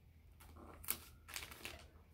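Gift wrapping paper being folded, pressed and taped down around a box. It gives a few faint, short crinkles and taps, the loudest about a second in.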